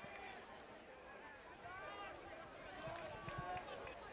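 Faint, distant voices calling out on a football pitch, with a few soft low thuds about three seconds in.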